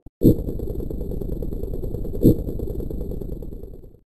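A segment-transition sound effect: a fast, rattling rumble with two loud hits, one right at its start and one about two seconds later, under a faint high whine. It stops abruptly just before the title card.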